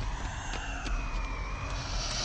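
Rocket boot thrusters in a sci-fi sound effect, running as a steady rushing noise over a deep rumble, with a faint high whine that slowly drops in pitch.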